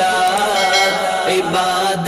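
A solo voice singing an Urdu naat (devotional song), drawing out long held notes that waver slightly in pitch.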